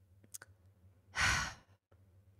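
A woman sighs into a close microphone: one breathy exhale of about half a second, a little over a second in, after a faint mouth click.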